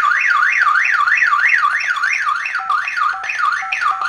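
2GIG alarm panel's audible panic alarm siren, a loud warble sweeping up and down about three times a second. Short beeps sound under it in the second half as the disarm code is keyed in, and the siren cuts off at the end.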